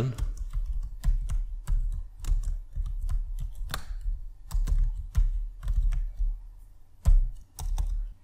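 Typing on a computer keyboard: a run of irregular key clicks, with a heavier keystroke near the end.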